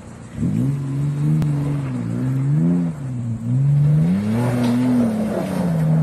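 Mitsubishi Pajero's engine revving hard under load while climbing a steep loose-gravel hill. It jumps up sharply about half a second in, then its pitch rises and falls repeatedly as the throttle is worked, with a brief dip in the middle.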